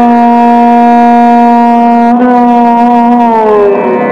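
Violin playing Raag Shyam Kalyan in Hindustani classical style: one long bowed note held for about three seconds, then gliding down in pitch near the end.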